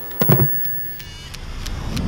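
Animated logo sting: a sharp, loud hit a quarter second in, then a thin steady tone, a string of mechanical clicks and a low rumble swelling toward the end.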